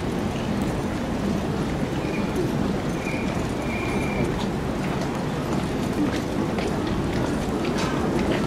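Steady murmur of a large crowd of spectators around a racecourse paddock, many voices blurred together with no single voice standing out. Three short faint high tones sound about two to four seconds in.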